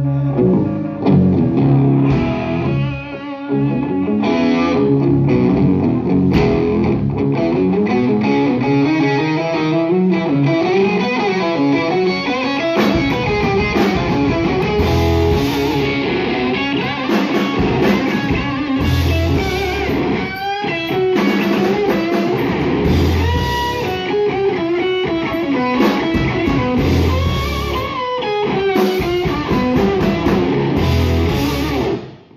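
Live rock band playing an instrumental stretch: electric guitars through amplifiers playing lead lines with bent, gliding notes, over bass and a drum kit.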